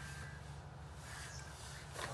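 Quiet indoor room tone: a steady low hum with faint background hiss and no distinct event.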